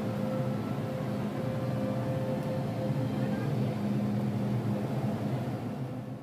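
Busy train station platform ambience: a steady low hum with a murmur of crowd voices.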